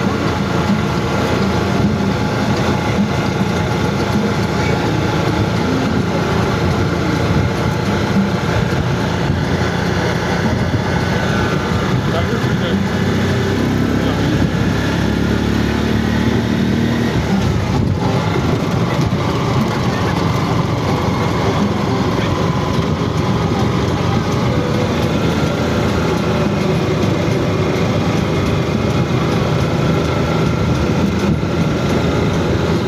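A motor vehicle's engine running steadily, with road noise and indistinct voices.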